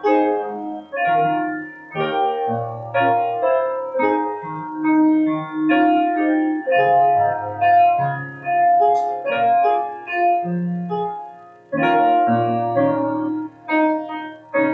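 Grand piano playing a slow hymn tune in chords, the melody played through once as an introduction before the congregation sings.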